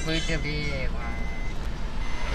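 Steady low rumble of a moving car heard from inside the cabin, with quiet talk in the first second.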